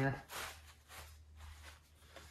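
Faint rustling and crinkling of a stubborn plastic package being handled, over a low steady hum.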